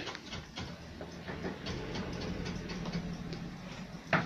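Faint television programme sound playing from a flat-screen TV's speakers in the room.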